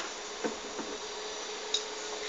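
Light handling noises as a bottle is picked up: a soft knock about half a second in and a sharp click near the end, over a steady faint hum.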